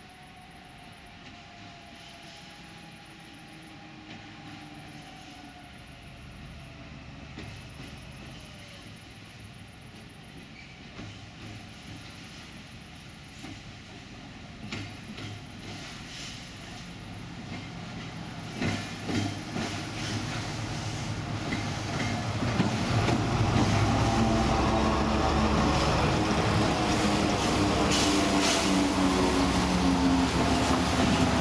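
A Colas Rail Class 70 diesel locomotive approaches and passes close by, growing steadily louder. Its wheels click over rail joints, and for the last third it is loud and steady as it runs alongside.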